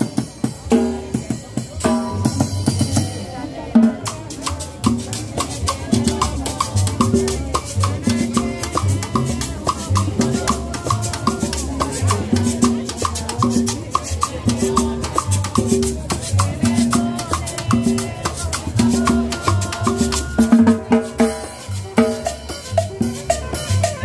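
Live band playing Latin dance music: drums and cymbals keep a steady beat over a repeating bass line, with a higher repeated melody joining in the middle.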